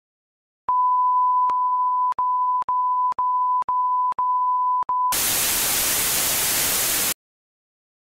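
Film-countdown leader sound effect: a steady high beep tone broken by short clicks about twice a second, then about two seconds of loud white-noise static that cuts off suddenly.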